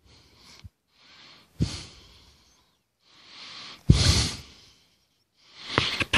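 A man breathing hard with effort: a series of about four short, sharp exhales, two of them starting abruptly.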